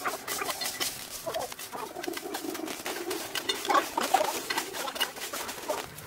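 A hand hoe scraping and chopping into dry leaf litter, roots and soil, in a run of short, crunchy, irregular strokes.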